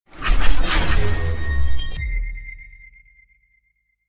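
Logo intro sound effect: a loud whooshing, shattering burst with a deep low boom, which cuts off about two seconds in and leaves a single high ringing tone that fades out.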